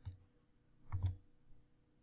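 Two computer mouse clicks about a second apart, the second the louder, with a faint steady hum underneath.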